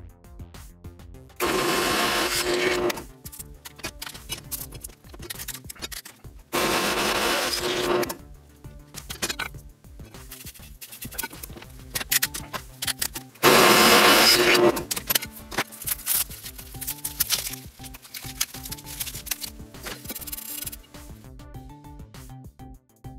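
Drill press boring holes through a metal enclosure with a 13.5 mm bit: three separate bursts of cutting noise of about a second and a half each, the last the loudest, over background music.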